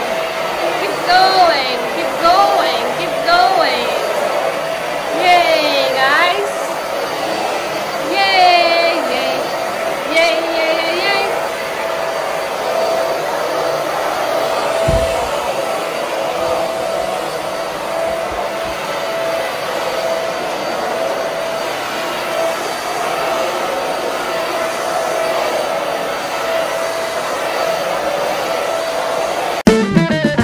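Vacuum cleaner motor running steadily, a constant drone with a steady whine on top; it cuts off just before the end.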